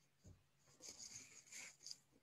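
Near silence with faint rustling close to the microphone, starting about a second in.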